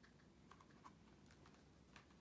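Near silence: room tone with a few faint light clicks, as a hardcover picture book is handled and shifted in the hands.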